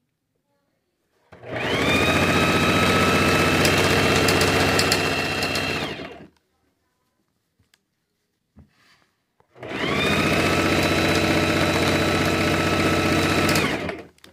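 Electric sewing machine stitching fabric in two runs. About a second in, its motor speeds up with a rising whine and then runs steadily for about five seconds before stopping. It starts again near ten seconds in and runs for about four more seconds.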